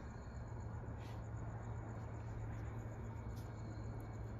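A steady low hum in a quiet pause, with a couple of faint short ticks about a second in and past three seconds.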